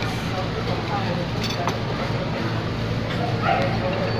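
Restaurant room noise: a steady low hum with faint, scattered voices in the background.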